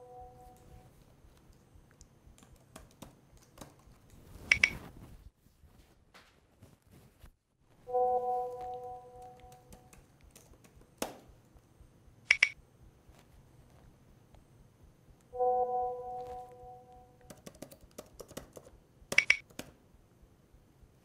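A repeating pair of electronic sounds: three times a soft held tone that fades over about two seconds, each followed a few seconds later by a sharp bright click, over faint taps of a laptop keyboard.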